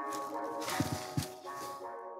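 Steady background music, with a rattle and two light knocks about a second in as a plastic CGC graded-comic slab is lifted out of its shipping box.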